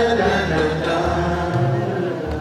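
A man's voice singing a wordless melody over plucked double-bass notes.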